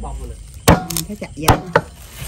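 Heavy steel cleaver chopping cooked chicken on a round wooden chopping board: four sharp chops in a little over a second, starting about two-thirds of a second in.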